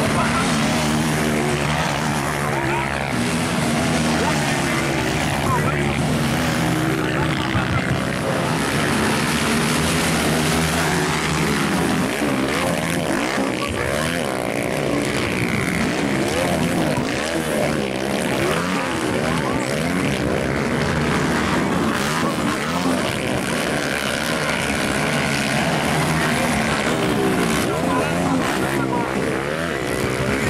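Several motocross bikes racing, their engines revving up and down so the pitch rises and falls again and again, with more than one engine heard at once.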